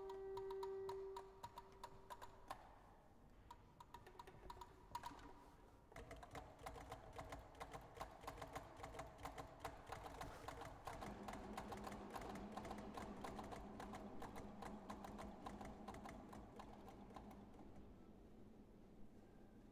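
Quiet contemporary ensemble music. A held note fades away in the first two seconds and a few scattered clicks follow. About six seconds in, dense rapid tapping and clicking sets in over soft pitched notes, and a low held tone joins at about eleven seconds.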